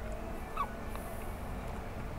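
Sipping a slushy drink through a plastic straw: a faint sucking hiss and one short rising squeak about half a second in, over a low steady hum.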